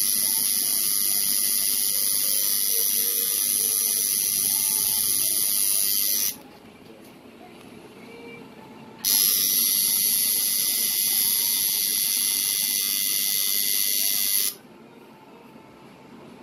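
Electric tattoo machine buzzing steadily at a high pitch as the needle works ink into skin. It runs for about six seconds, stops for about three, then buzzes again for about five seconds and stops shortly before the end.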